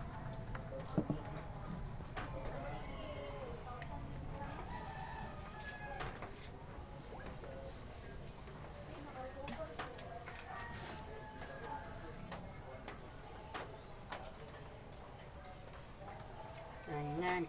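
Faint chicken calls in the background, several short curving calls spread through the stretch. Occasional light clicks and knocks come from handling kitchenware and an oil bottle at the stove.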